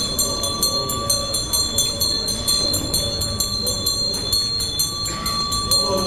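Small metal ritual bells ringing with sustained high tones and fast, evenly spaced strikes over a low rumble.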